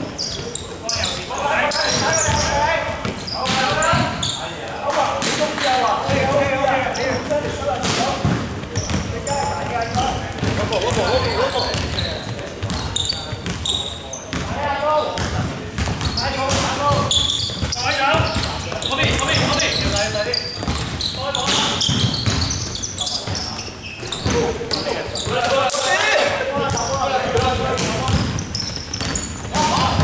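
Basketball bouncing on a wooden gym floor during play, among the voices of players and spectators talking and calling out, in the echo of a large indoor sports hall.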